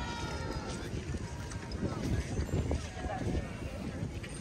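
Outdoor boardwalk ambience: indistinct voices of people nearby over the walker's footsteps and a low, uneven rumble.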